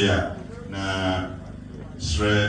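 A man's voice through a handheld microphone, holding one long, steady-pitched syllable about a second in, after a short louder burst of voice at the start.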